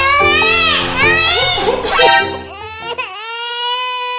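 A baby's wailing cry, edited in as a comic sound effect over background music. Several rising-and-falling wails give way about two and a half seconds in to one long held wail.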